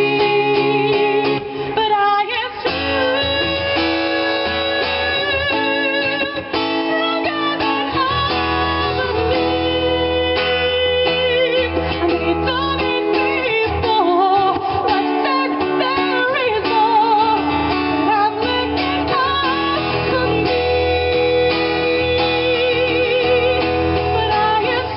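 A woman singing live to an acoustic guitar accompaniment, with a wavering vibrato on her held notes.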